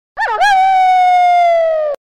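A dog howling: a brief wavering start, then one long note that slowly falls in pitch and cuts off suddenly.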